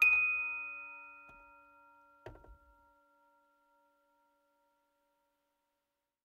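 A single bell-like mallet-percussion note, glockenspiel or chime, struck once and ringing out, fading away over about three seconds as the last note of the song. A short soft knock sounds a little after two seconds.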